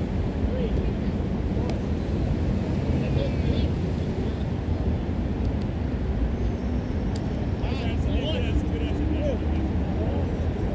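Players' shouts and calls from across an outdoor field, over a steady low rumble.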